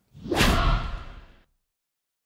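A whoosh sound effect that swells quickly and fades out over about a second.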